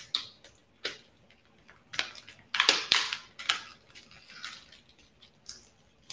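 Small plastic packs of seed beads being handled and opened: a run of irregular clicks, rattles and crinkles, loudest about three seconds in.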